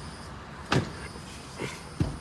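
Vehicle cabin noise: a low, steady rumble, with a sharp knock about three-quarters of a second in and a softer one near the end.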